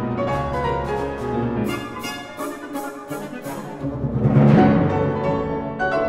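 Grand piano and symphony orchestra playing a piano concerto, the piano's quick runs over the strings. About four seconds in, the full orchestra rises into a loud swell, the loudest moment, then settles back under the piano.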